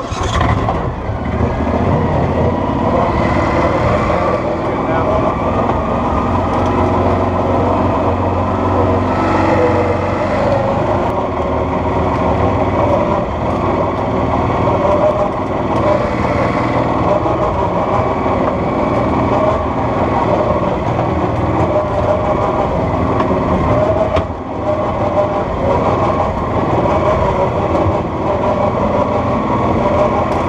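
Coot ATV's engine running steadily under way as the machine crawls over a rough woodland trail, coming in suddenly at the start with a brief dip about three quarters through.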